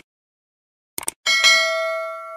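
Subscribe-button animation sound effect: a few quick clicks about a second in, then a bell ding with several tones that rings out and fades.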